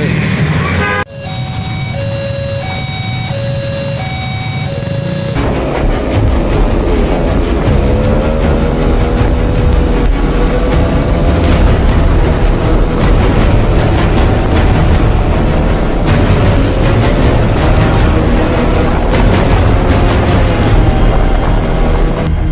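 A few seconds of simple electronic music notes, then loud motorcycle riding noise from a group on a winding uphill road: engines and wind buffeting the microphone, with music mixed underneath.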